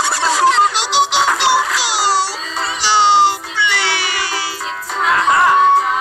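A tinny electronic tune with a synthesized singing voice, played by a battery-powered toy excavator through its small built-in speaker.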